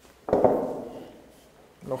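A small glass spice jar knocks once against the wooden worktop: a single clunk with a short ringing tail.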